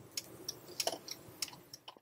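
Faint, irregular light clicks and ticks over a quiet low hum inside a moving car's cabin.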